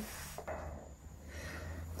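Faint rustling with a light knock about half a second in, as a person shifts from kneeling to hands-down on an exercise mat, over a low steady hum.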